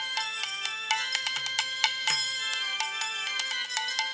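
Devotional kirtan music without singing: rapid, ringing strikes of hand cymbals over occasional deep drum strokes whose pitch slides downward, as on a khol drum.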